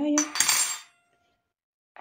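Metal fork clinking and scraping in a plastic bowl as eggs are beaten into sour milk for varenyky dough, a brief burst lasting under a second.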